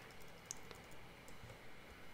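A few faint, sparse clicks from a computer keyboard over low room hiss.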